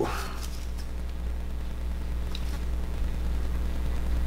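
A steady low hum with a few faint clicks and rustles from handling a ball python egg.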